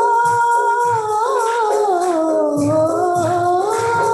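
A woman singing a worship song into a microphone, holding long, slowly gliding notes, accompanied by drum beats and a jingling tambourine.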